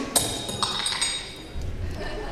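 A sharp clink with a short ringing after it, followed by two fainter clicks.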